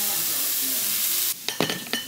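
Sausage links sizzling in a frying pan, a steady hiss that cuts off suddenly about one and a half seconds in, followed by a few light clicks and knocks.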